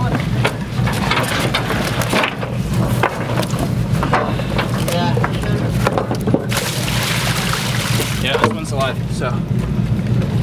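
Steady low drone of a ship's engine. About seven seconds in, water is poured from a bucket with a rush lasting about a second and a half.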